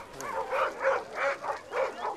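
A young dog barking in a quick run of short, high barks, about four a second.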